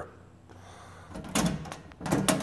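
A few sharp metal clicks and a rattle just past halfway, as the latch of a steel electrical breaker panel's door is worked open by hand.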